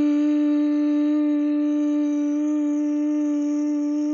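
A voice humming one long, steady note held at an even pitch, a made-up engine drone for a Lego spaceship being flown.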